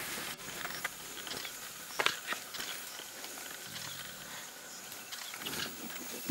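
Elephant calf giving a low, growly rumble around the middle, among scattered sharp crackles and snaps, the loudest about two seconds in.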